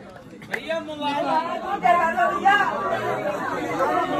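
Crowd of devotees talking over one another, several voices at once, in a temple hall.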